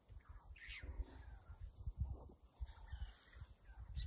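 A bird calling a few times in the bush, over irregular soft low thumps and rustles close by, the loudest about two seconds in.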